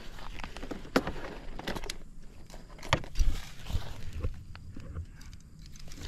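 Handling noise from a freshly landed snakehead (haruan) and a fish lip grip on gravelly grass: scattered clicks, rustles and knocks, the loudest a pair of knocks about three seconds in.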